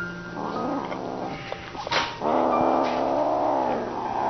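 Kitten yowling twice: a shorter call, then a long, steady, louder one of about a second and a half.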